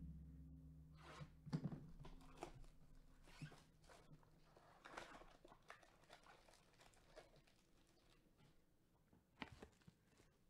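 A cardboard 2021 Topps Finest baseball hobby box being opened and its packs tipped out: faint tearing, rustling and light handling clicks, busiest in the first half and thinning out toward the end.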